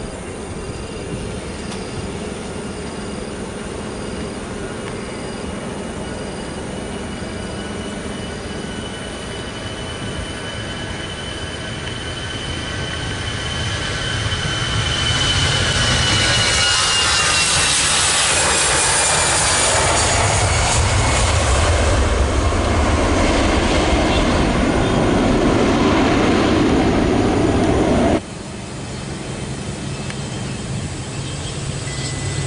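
Airbus A320-200's twin turbofan engines at takeoff power during the takeoff roll: a high steady whine that dips in pitch as the jet passes, with the engine noise growing much louder from about halfway. Near the end it cuts off abruptly to the quieter, lower hum of an ATR72 turboprop.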